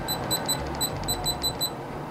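A quick, irregular run of about ten short high beeps as the BedJet 3's fan setting is stepped down with repeated remote button presses, from 80% to 30%. The beeps stop shortly before the end, and the blower's steady air noise runs underneath.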